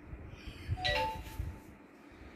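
A short metallic clink with a brief ringing tone, just under a second in.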